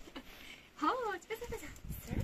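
A short high vocal call about a second in, rising and then falling in pitch, followed by a brief steady note.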